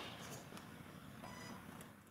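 Faint room noise in a large hall, fading down, with a faint high-pitched tone briefly about halfway through.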